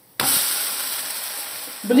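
A thin pancake (blin) flipped onto a hot frying pan. Its uncooked side lands on the hot metal with a sudden loud sizzle that slowly fades.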